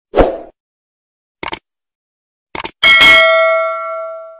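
Subscribe-button animation sound effects: a short burst near the start, two quick pairs of clicks, then a bell-like ding, the loudest sound, that rings on and fades away.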